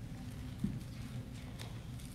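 Steady low room hum with a soft low thump about two-thirds of a second in and a faint sharp click near the end, small handling knocks at a lectern.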